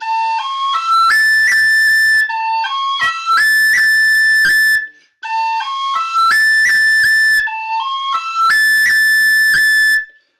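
Tin whistle playing a short rising run of notes into a long held high A ornamented with a long roll, the held note broken by quick cut-and-tap grace notes. The phrase is played twice, with a brief break about halfway.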